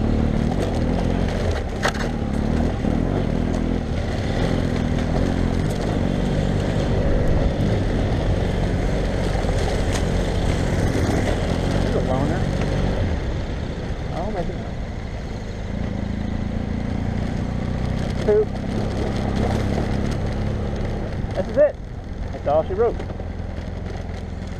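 Adventure motorcycle engine running steadily at low trail speed as the bike rides a dirt track, its pace easing a little about halfway through.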